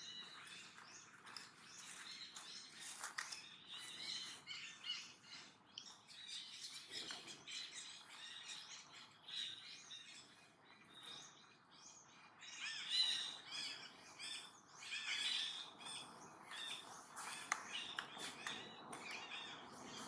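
Faint forest birdsong: many short chirps and calls from several birds, coming thick and irregular, over a faint steady high tone.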